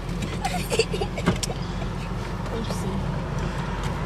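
Steady low hum of a car idling, heard inside the cabin, with a sharp click a little over a second in.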